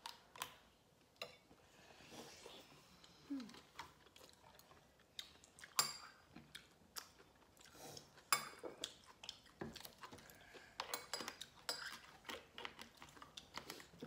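Irregular light clinks and taps of spoons and chopsticks against ceramic bowls and an earthenware pot during a meal, a dozen or so scattered through, the sharpest about six and eight seconds in.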